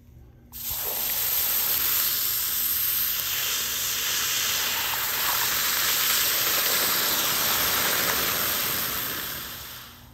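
Red-hot copper cube hissing and sizzling against a block of ice as the melting ice flashes to steam. The loud hiss starts suddenly about half a second in, holds steady, and fades away over the last second.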